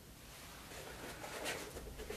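Faint rustling and shuffling of two people moving on a foam training mat as a grappling hold is released, with a steady low room hum and a soft brush about one and a half seconds in.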